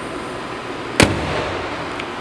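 A car hood slammed shut once about a second in: a single sharp bang with a short low rumble after it, over a steady background hiss.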